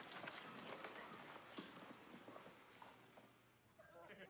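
Near silence: a faint, high, evenly pulsing chirping like crickets, with a few soft footsteps.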